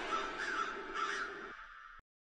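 A crow cawing, about three calls, fading away.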